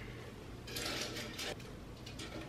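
Small clicks and rustling as battery-operated twinkle lights are handled and arranged inside a metal-framed glass lantern, with a quick run of clicks about a second in.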